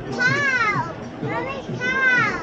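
A child's high-pitched calls, twice, each rising and then falling in pitch, over street chatter.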